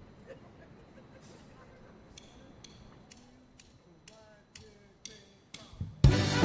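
Quiet count-in before a band starts a song: light, sharp ticks at a steady beat of about two a second, with a faint voice under them, and the full band comes in loudly right at the end.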